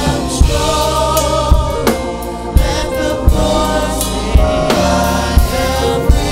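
Live gospel song: a woman sings lead into a handheld microphone, with backing singers and a band with drums.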